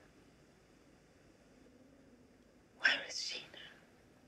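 A woman whispering one short, breathy phrase about three seconds in, after a stretch of faint hiss.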